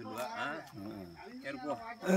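Men's voices talking, in a low-pitched, conversational back-and-forth.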